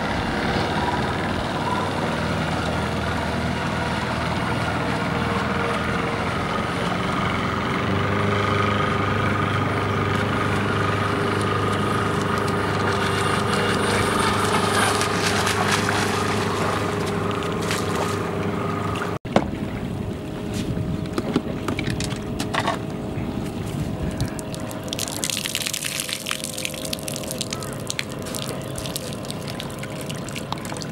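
Electric RC speedboat's motor running steadily across the water, a drone with a few constant tones. After a cut about 19 seconds in, quieter water sounds take over, with splashing and a trickle of water from about 25 seconds in.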